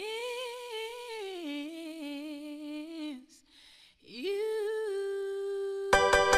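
A high solo voice sings long wordless notes with vibrato and no accompaniment. The first note swoops up, holds and then steps lower; after a short pause a second note slides up and holds steady. Right at the end the full electronic dance beat comes in.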